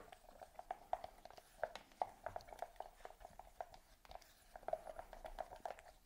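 Wooden stir stick quickly mixing two-part polyurethane foam (Part A just added to Part B) in a plastic mixing cup: rapid, faint scraping and ticking against the cup walls, with a short lull about three seconds in. The mixing is fast because the foam starts reacting as soon as Part A goes in.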